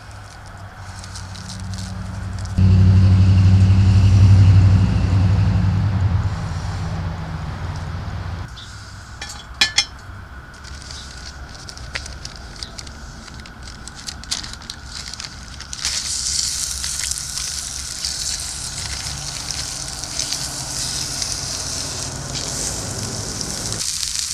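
Bratwurst patty frying in a hot cast iron pan over a small wood-fired stove: a steady high sizzle begins about two-thirds of the way in as the meat hits the pan. Earlier there is a loud low rumble for several seconds, then a few sharp clicks.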